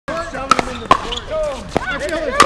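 Sharp pops of paddles hitting a plastic pickleball: two close together about half a second in, another just before a second, and one near the end, with voices talking under them.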